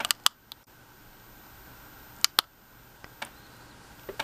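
A few short, sharp plastic clicks and taps from a hand gripping and handling a small battery-powered lamp rig, coming in pairs: two near the start and two a little after two seconds. Under them is a faint steady high whine.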